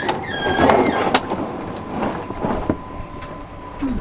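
Rock-filled plastic barrel being hauled up a rocky pit on ropes, scraping and knocking against the rock walls, with a sharp knock about a second in.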